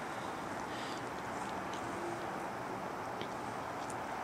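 Quiet, steady outdoor background noise of a residential street, with no distinct events.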